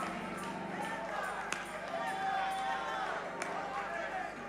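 Choir and congregation singing a gospel song over steady accompaniment, many voices together with a long held note in the middle. Two sharp hits about two seconds apart cut through.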